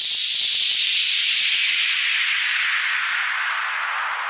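A falling white-noise sweep, a downlifter effect in an EDM remix, with the bass and beat dropped out. The hiss slides steadily down in pitch and slowly fades.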